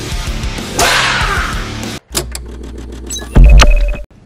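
Intro music that cuts off abruptly about two seconds in, after a loud rising whoosh. A logo sting follows over a low hum, with sharp clicks and a short high beep, and ends in a loud, deep boom near the end.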